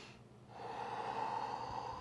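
A long audible breath by a person folding forward into a stretch, starting about half a second in and trailing off near the end.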